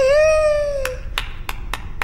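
A cartoon character's wordless voice holding one long squeaky note that sags slightly in pitch for about a second, followed by five short, sharp strikes in a quick, uneven run.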